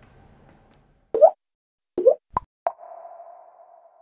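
Logo-animation sound effect: four short pitched 'plop' blips over about a second and a half, several rising in pitch, the first the loudest. The last blip trails off into a fading tone.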